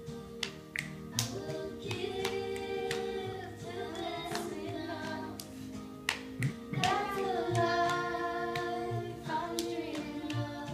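A children's song with singing plays from a TV while two people clap hands together in a handshake routine, giving repeated sharp hand claps over the music; a child's voice sings along.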